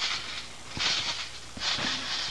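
Backyard trampoline being jumped on: two bounces about a second apart, each a short thud of the mat with a brief rush of noise.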